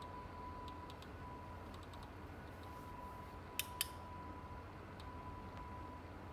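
Faint clicking of the rotary menu knob on a Novastar VX4S-N LED video controller as it is turned to step the brightness setting up, with two sharper clicks close together a little past halfway. A faint steady hum and thin high tone run underneath.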